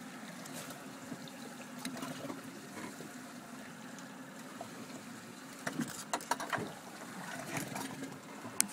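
Steady low hum and faint water sounds of a boat on the water, with a cluster of short light knocks about six seconds in as a large red snapper is handled on the fiberglass deck.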